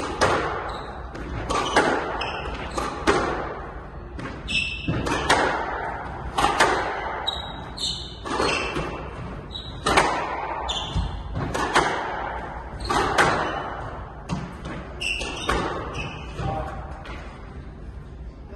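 Squash rally: the rubber ball cracking off rackets and the front wall about once every second or so, each hit echoing around the court, with short high squeaks of court shoes on the wooden floor between hits.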